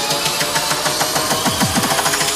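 Frenchcore electronic music: a fast, even run of distorted kick drums, each falling in pitch, growing louder in the second half.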